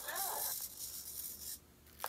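Small speaker on a Circuit Playground Bluefruit playing the last word of a recorded Buddy the Elf line, then about a second of faint hiss that cuts off suddenly.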